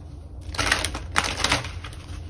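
A deck of tarot cards being shuffled by hand: a rapid run of sharp card clicks and slaps that starts about half a second in.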